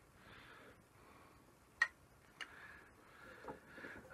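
A quiet pause with soft breaths and two short, sharp clicks a little over half a second apart near the middle.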